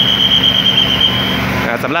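A steady high-pitched squeal lasting about a second and a half, over the running diesel engines of a Thai special express diesel railcar train standing ready to depart.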